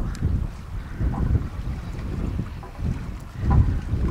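Wind buffeting the microphone in irregular gusts, a low rumble that swells and drops several times.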